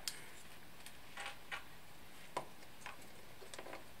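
Faint, scattered light clicks and taps from small laser-cut wooden robot parts and a servo being handled and set down on a desk, about half a dozen over the few seconds.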